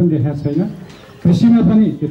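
Only speech: a man speaking in Nepali, with a short pause about halfway through.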